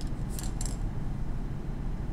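Two brief scratchy sounds of a stylus on a tablet screen about half a second in, over a steady low room hum.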